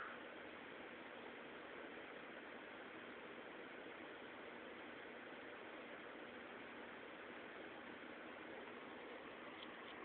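Near silence: a faint, steady hiss of room tone and recording noise.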